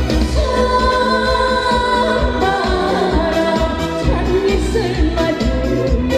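A woman singing into a handheld microphone over instrumental accompaniment with a steady bass beat.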